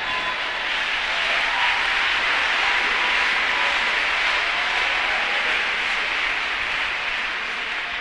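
Large congregation applauding. The clapping swells over the first couple of seconds, holds, and slowly dies away toward the end.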